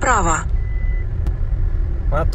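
Low, steady engine and road rumble inside the cabin of a JAC M4 on the move. A single short, high electronic beep sounds about half a second in.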